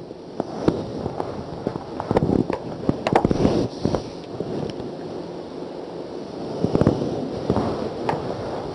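Marker and eraser working on a whiteboard: scratchy rubbing and sharp clicks that come in clusters, thickest from about two to four seconds in and again near seven seconds.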